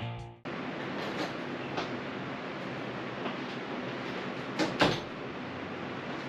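Rock intro music ends under half a second in, giving way to a steady hiss of garage room noise with a few light knocks, the loudest two close together near the end.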